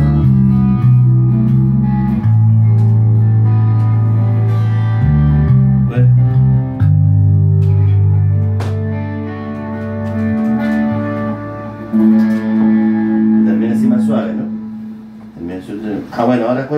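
Two electric guitars and an electric bass playing together, long held bass notes changing every second or two under sustained guitar notes. The playing grows quieter in the second half and dies away near the end.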